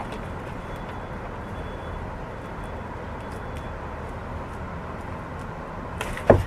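Steady outdoor city background hum, with faint scattered small clicks and rustles from gloved hands working through soil and roots in a raised bed.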